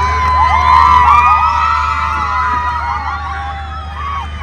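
A group of young women cheering and shouting together, many high voices overlapping in long, drawn-out whoops, loudest in the first couple of seconds, over a steady low hum.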